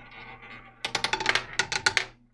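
Roulette ball clattering over the metal pocket frets of a double-zero roulette wheel: a quick, irregular run of sharp clicks starting about a second in, stopping near the end as the ball drops into a pocket.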